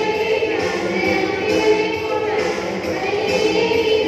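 A group singing a Tamil Christian children's action song, with music.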